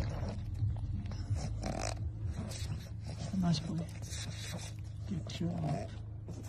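A pug standing in pool water, with low, bending vocal sounds about three and a half and five and a half seconds in, and water moving around it; a person says "nice".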